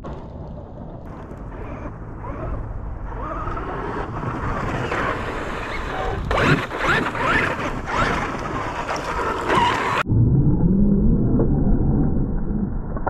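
Traxxas X-Maxx 6S brushless electric RC monster truck driving on loose dirt. The motor whine rises and falls over tyres scrabbling and dirt spraying, growing louder from about four seconds in. About ten seconds in the sound cuts off abruptly to a slowed-down, deeper, duller version with a low rising tone.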